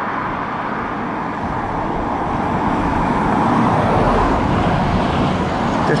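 Road traffic noise: a steady rushing that swells about three to five seconds in, as a vehicle passes.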